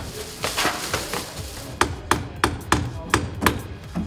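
Hammer striking wood as a set wall is demolished: a few scattered blows, then a steady run of sharp hits about three a second in the second half.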